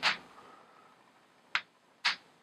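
Chalk striking a blackboard in short, sharp strokes while writing: one right at the start and another about a second and a half in, with quiet between.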